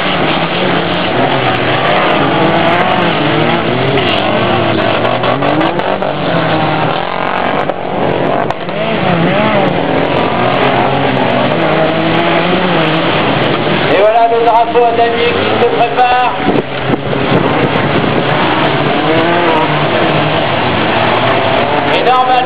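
Engines of several stripped-down race cars on a dirt track, their pitch rising and falling as they accelerate and lift off. The revving is louder for a few seconds just after the middle.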